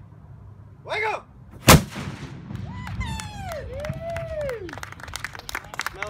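A black-powder cannon fires once, a single very loud boom just under two seconds in, after a brief shout and followed by a low rumbling tail. Voices call out afterwards, and rapid clapping starts near the end.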